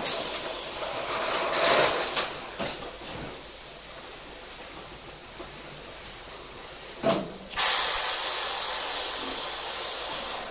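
Pneumatic palletiser moving rows of 4-litre metal cans: bursts of compressed-air hiss with sharp metal knocks over the first three seconds, then a quieter stretch. About seven seconds in there is another knock, then a loud hiss of exhausting air that slowly fades.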